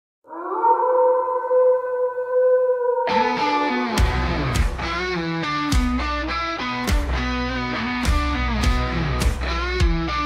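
Rock song intro: a long held, slightly wavering note with an echoing effect, then about three seconds in a band comes in with distorted electric guitar, bass and steady drum beats.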